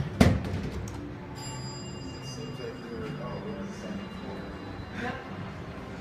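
A thud, then a steady high-pitched electronic tone about three seconds long, over background music in an elevator lobby.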